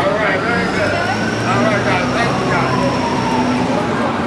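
Street crowd chatter with a heavy vehicle passing. Its engine hums low, and a long whine rises and then slowly falls in pitch, with a thin high tone that stops shortly before the end.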